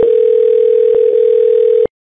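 Telephone line tone after the call is hung up: one steady low tone with a couple of faint clicks, cutting off suddenly near the end.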